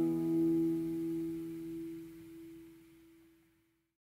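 The final strummed chord of an acoustic guitar ringing out and dying away over about three seconds, ending the song.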